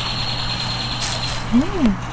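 A steady low machine hum runs throughout, with a high-pitched whine over it that stops about a second and a half in and a brief hiss about a second in.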